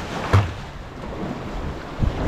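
Sea waves washing against the jetty's rocks, with wind on the microphone. A single thump about a third of a second in.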